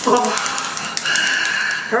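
Young men imitating a drum roll with their voices: a rapid clattering rattle under a held high-pitched cry, with a short shout at the start.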